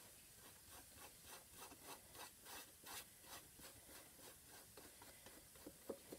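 Faint, repeated swishes of a paintbrush stroking paint onto a wooden box, two to three strokes a second.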